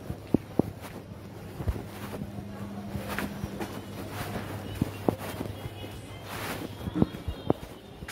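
Footsteps of someone walking on a dusty lane, about two steps a second, plainest at the start and again near the end. Through the middle a steady low hum runs for several seconds.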